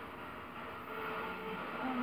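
Quiet room background: a low, steady hiss and hum with no distinct event.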